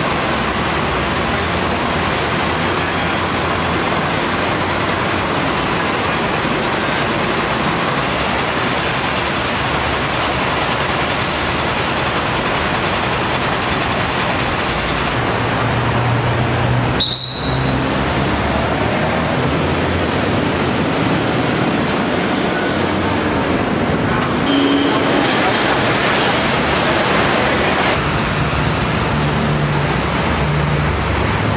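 Steady road traffic noise, a dense hiss with the low drone of vehicle engines passing on the road beneath an elevated expressway. There is a single sharp click about halfway through.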